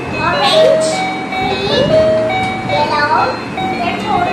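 Battery-powered toy electric guitar playing its electronic tune and sound effects as its buttons are pressed: short beeping notes that step in pitch, mixed with repeated rising and falling chirps about once a second.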